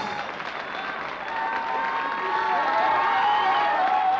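Studio audience applauding at the end of a song, with a high voice carrying over the applause from about a second in.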